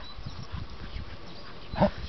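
Faint dog sounds over low rumble from the handheld camera moving, with one short, louder pitched sound near the end.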